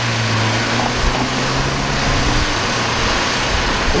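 Road traffic on a busy street: a vehicle's engine drones steadily and fades out about three seconds in, over a constant wash of traffic noise.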